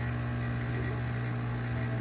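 Heat exchanger espresso machine's pump running with a steady, even buzzing hum at the start of a shot. Water is being pushed into the puck while no coffee has yet come out of the bottomless portafilter.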